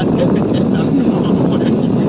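Steady rush of sea surf breaking against a rocky shore, mixed with wind on the microphone, with faint voices over it.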